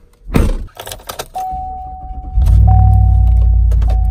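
A pickup truck's door shuts with a thump, then a steady electronic warning chime sounds while the engine cranks and starts about two and a half seconds in, running loud and low at start-up for over a second before it eases off.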